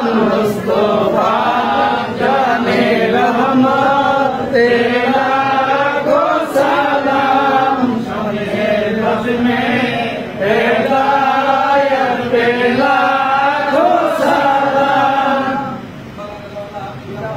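A group of men chanting together in unison, a devotional Islamic chant sung in long held phrases.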